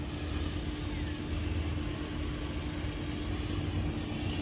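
Steady engine hum over a low rumble, as of a motor vehicle running nearby.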